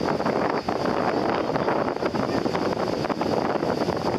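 Wind buffeting the microphone over the steady noise of surf breaking on a sandy beach.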